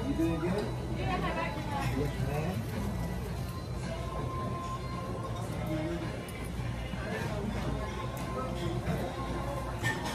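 Restaurant dining-room ambience: indistinct voices of other diners over background music, with a few light clinks of dishes and cutlery in the second half.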